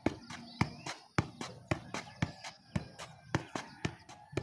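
A football being juggled on the feet: a regular run of kicks, about two a second, with lighter taps in between.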